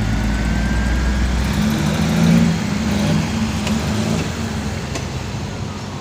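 Steady low engine rumble with traffic noise; a deeper engine note swells about a second and a half in and fades by about four and a half seconds.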